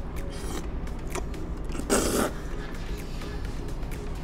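A person slurping black bean noodles, with one loud, short slurp about two seconds in and a smaller one near the start, over background music.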